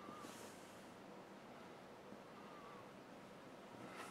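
Near silence: room tone, with one faint breath from the person filming during the first second.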